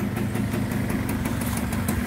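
Suzuki Satria motorcycle's two-stroke engine idling steadily.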